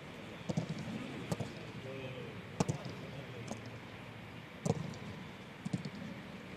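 Football training session on a grass pitch: about six short, sharp knocks at irregular intervals over a steady open-air background, with faint distant voices.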